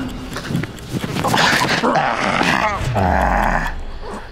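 Loud, rough growling of a creature-like attacker, starting about a second in and running in long harsh stretches, over the scuffle of someone pinned on a concrete floor.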